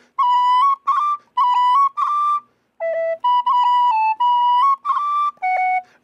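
Gary Humphrey D tin whistle playing two short ornamented phrases of a slide, the notes decorated with quick cuts, short rolls and a short cran on the D, with a brief break about two and a half seconds in.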